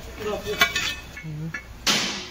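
Indistinct voices, then a short loud rush of noise near the end.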